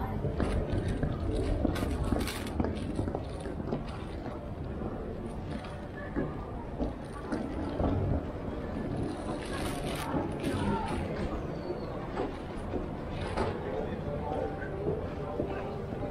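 Busy pedestrian street ambience: indistinct chatter of passers-by over a low steady rumble, with scattered footsteps and small knocks on the paving.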